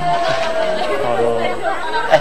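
Voices chattering over background music, with one long held note sliding slightly downward.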